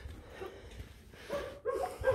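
Faint dog barks and whines from the shelter's kennels, with a few short calls near the end over a low rumble.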